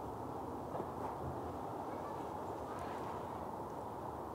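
Steady low outdoor background noise with a few faint ticks.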